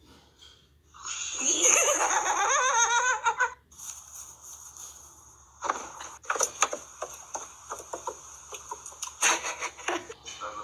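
A person laughing hard for a couple of seconds, followed by a series of irregular clicks and taps.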